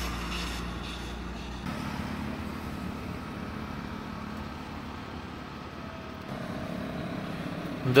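Street traffic on a wet road: a motor vehicle runs with a steady low hum. A heavier low rumble stops about a second and a half in.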